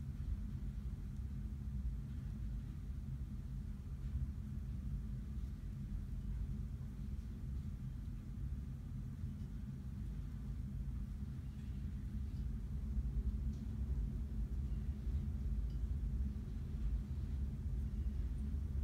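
A steady low background hum with no distinct events.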